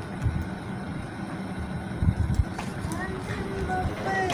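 A steady low rumble of background noise, with a couple of dull thumps about two seconds in and faint voices starting near the end.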